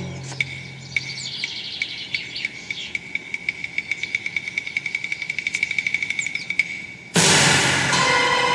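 Film soundtrack: birds chirping over a high, ticking pulse that gets steadily faster, after the fading tail of a deep drum hit. About seven seconds in, loud score music suddenly starts.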